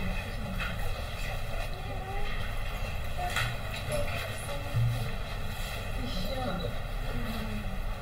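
Steady room noise with faint murmured voices and a few light clicks.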